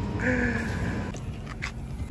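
Steady low background hum in a shop, with a brief faint voice near the start and a few light clicks in the second half.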